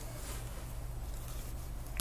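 Room tone: a steady low hum under faint hiss, with one small click at the very end.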